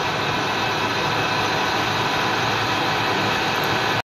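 Metal lathe running at a slow spindle speed on fine power feed while a drill, ground back on one flute to cut oversize, bores into a grade 5 (6Al4V) titanium bar; a steady machine hum with faint steady tones. The slow speed and feed keep the heat down in the titanium.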